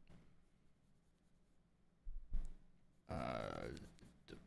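Near silence, a brief low sound about two seconds in, then a man's drawn-out hesitant 'uh' near the end.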